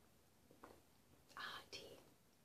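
Near silence while sipping from a glass mug, with faint breathy sounds of a sip and an exhale about one and a half seconds in.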